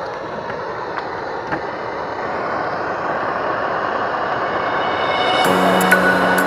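Handheld gas blowtorch running: a steady hiss that grows gradually louder, with two faint clicks in the first two seconds. Music comes in near the end.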